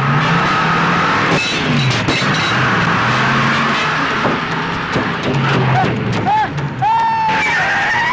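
A lorry's engine running loud as it closes in, with a dense noise of tyres skidding. A few short high wailing glides come near the end.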